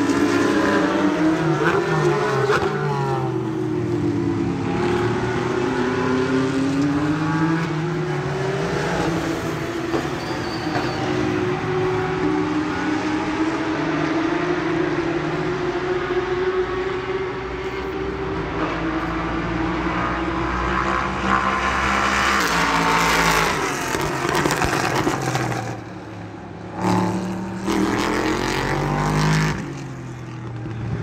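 Racing car engines running, their pitch rising and falling again and again as they rev and pass. The sound dips briefly near the end.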